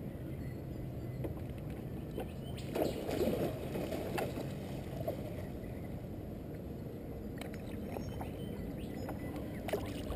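Water sloshing and lapping around a kayak hull, with a few light knocks and a brief louder swell of splashing about three seconds in.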